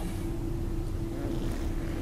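Steady low rumble with a constant hum running under it, an unbroken background machine noise.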